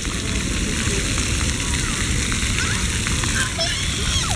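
Steady hiss of splash-pad fountain jets spraying and spattering onto wet pavement, with a low rumble underneath.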